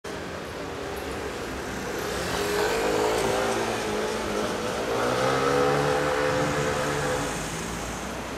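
A motor vehicle's engine running in street traffic, getting louder from about two and a half seconds in as its note rises slowly, then holding.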